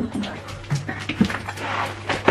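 A dog whimpering in a few short whines, with rustling and clicks close by.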